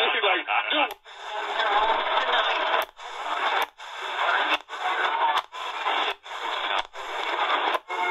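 A C.Crane CC Skywave portable radio's speaker playing AM reception: a talk station on 1530 kHz for about a second. The radio is then stepped up the medium wave band one channel at a time, with about eight steps, each cutting the audio briefly with a faint click. Between the steps come short spells of noisy, weak distant-station signal.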